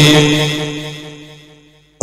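A man chanting an Arabic supplication into a stage microphone, holding one note at a steady pitch as it fades away over about two seconds.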